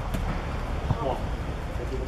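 Outdoor football match ambience: faint distant shouting voices from players and spectators over a steady low rumble, with a short dull thud just before a second in.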